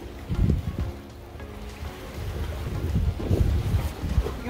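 Wind buffeting the microphone in gusts, easing off a second in and building again toward the end, over soft background music.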